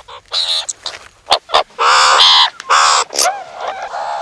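Meerkat alarm calls: a young meerkat screeching frantically in a string of harsh, repeated calls, loudest about two seconds in. The alarm warns of a cobra and summons the rest of the troop.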